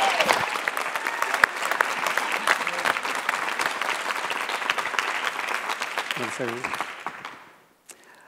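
Audience applauding, a dense patter of many hands clapping that dies away in the last second or so.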